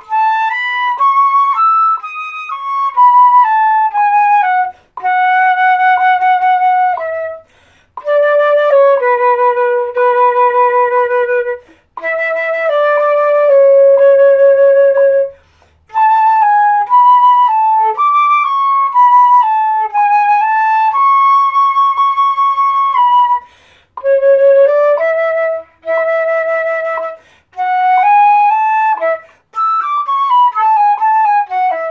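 Solo concert flute playing the slow Flute I line of a duet, one note at a time, in phrases separated by short pauses for breath. The longer held notes waver slightly.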